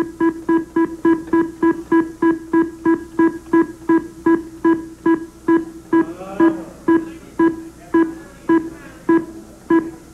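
The Price Is Right's Big Wheel spinning, giving a short pitched tick for each number that passes the pointer. The ticks come about four a second at first and slow to about two a second as the wheel loses speed.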